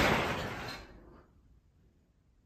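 A loud crash from the attic overhead, its noise dying away over about the first second.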